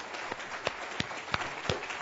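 Audience applause tapering off, with scattered individual claps standing out over a faint wash.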